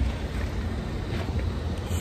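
Wind buffeting a phone's microphone: a steady, low rushing noise.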